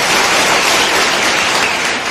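Audience applauding loudly, a dense clatter of many hands clapping at once.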